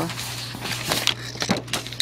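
Light handling noise as a handheld camera and paper are moved: a soft hiss with a few short clicks, over a steady low hum.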